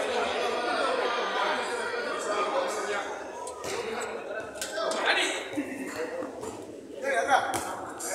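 Several men's voices shouting and talking over one another, the players of a small-sided football game, busiest in the first half and sparser later, with a few short sharp knocks.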